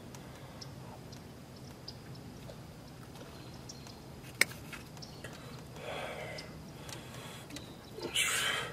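Quiet handling of a hooked largemouth bass while the hook is worked out of its tongue: faint small ticks from hook and line, with one sharp click about four and a half seconds in.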